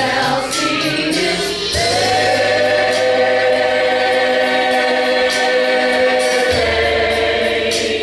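Church choir singing a gospel song, holding one long chord from about two seconds in until past six seconds, over a low bass line.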